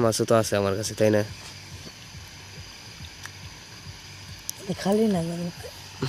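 Water bubbling steadily from an aeration hose in a steel basin of goldfish, with hands sloshing among the fish.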